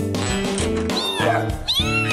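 Game music with two meowing cat calls over it, the voice of the cartoon cat-burglar character: one falling call about a second in and a second, arching call starting near the end.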